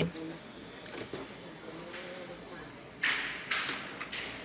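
Canon PIXMA MP287 inkjet printer's mechanism moving during a power-on test on a replacement main board: a quiet stretch, then two short sliding, clattering noises about three seconds in.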